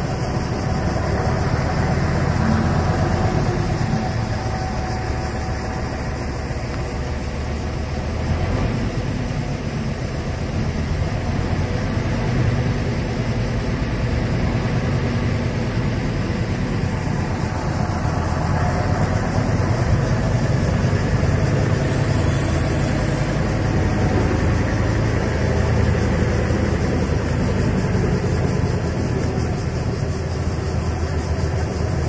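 Diesel engines of heavy earthmoving machinery and dump trucks running, a steady low drone throughout.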